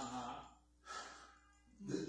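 A man's drawn-out 'uh' into a handheld microphone, fading out; a short breathy exhale about a second in; then a brief voiced 'huh' near the end.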